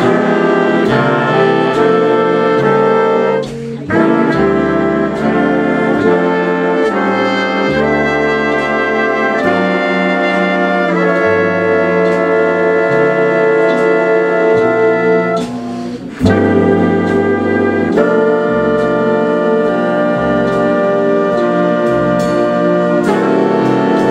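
Swing big band playing in full ensemble: saxophones, trombones and trumpets in sustained chords over guitar and upright bass. Twice, about three and a half and sixteen seconds in, the band briefly drops back before coming in again together.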